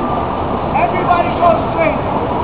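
Busy city street noise: a steady rumble of traffic with scattered voices from a gathered crowd.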